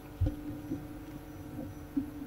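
Low thumps and handling noise as a book and papers are moved close to a table microphone: one louder thump about a quarter second in, then a few lighter knocks, over a steady hum.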